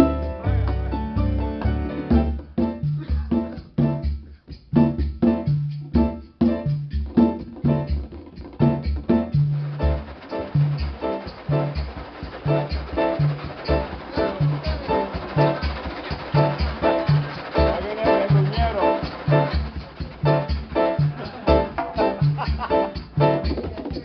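Live Latin jazz band playing a mambo, led by grand piano with bass and percussion keeping a steady pulse. The first several seconds come in choppy, separated phrases, and the playing fills out into a continuous groove from about ten seconds in.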